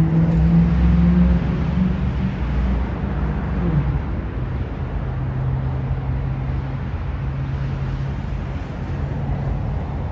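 A motor vehicle's engine running at low speed, a steady hum that drops in pitch about four seconds in and then holds level.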